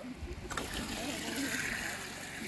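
Faint, distant voices over steady outdoor background noise and low rumble, with a single sharp click about half a second in.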